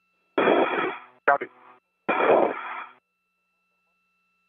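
Space-to-ground radio during a short communications handover: three short bursts of thin, unintelligible radio voice, about half a second, a second and a quarter, and two seconds in, over a faint steady tone.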